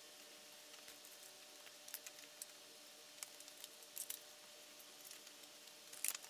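Near silence with faint, scattered clicks and rustles of photo prints being handled and set down on a cardboard poster board.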